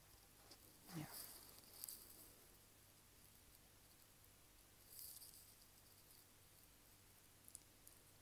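Near silence: room tone, with a softly spoken "yeah" about a second in and a couple of faint rustles.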